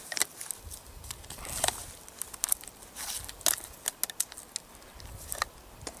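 Latex condom being stretched and worked over a Glock pistol magazine by hand: irregular rustling and crackling with scattered small handling clicks.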